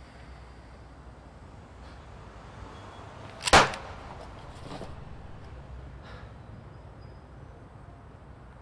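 A single sharp swish, like a fast swing through the air, about three and a half seconds in, over a low steady outdoor background noise. A few faint clicks follow.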